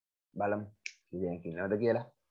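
A man speaking briefly: two short stretches of speech with a brief hiss between them.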